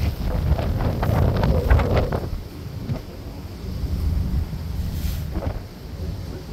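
Strong wind buffering the microphone on the open deck of a moving ferry, a heavy low rumble that is loudest in the first two seconds, over the wash of choppy water.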